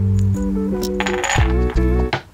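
Background music, with a short metallic jingle about a second in as a handful of metal cam-lock connector bolts is dropped onto a melamine furniture panel.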